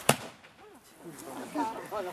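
Flintlock pistol firing a single blank shot: one short, sharp crack at the very start.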